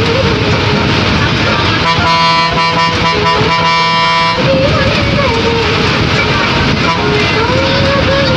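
Bus cabin noise with music and a singing voice playing over it; about two seconds in, a horn sounds one steady blast of about two and a half seconds that cuts off sharply.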